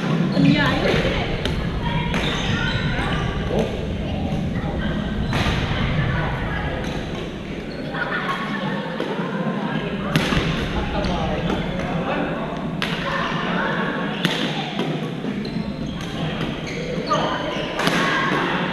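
Badminton rackets striking a shuttlecock during a doubles rally, sharp hits a few seconds apart, echoing in a large gym hall.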